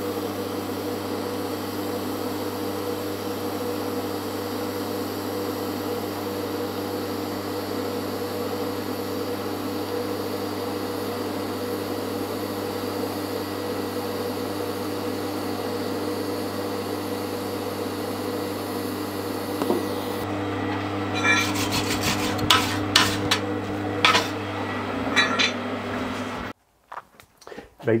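TIG welding arc on DC, brazing silicon bronze rod onto thin mild steel plate, running steadily with a hum. Over the last several seconds a run of sharp clicks and crackles joins it, then the sound cuts off abruptly shortly before the end.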